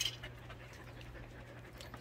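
Jindo dogs panting faintly over a steady low hum.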